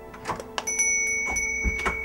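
Knocks and a heavy thud of a door being shut, over soft background music. A high, steady ringing note comes in under a second in and holds.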